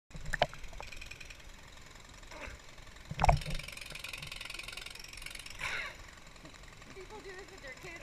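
Swimming-pool water moving and lapping close to a waterproof camera at the waterline, with the steady rush of a small waterfall spilling into the pool. A few small clicks come in the first second, and one sharp knock or splash about three seconds in.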